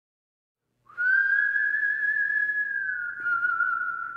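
A single high, whistle-like musical note enters just under a second in with a short upward slide, holds steady, then dips slightly in pitch and begins to fade near the end.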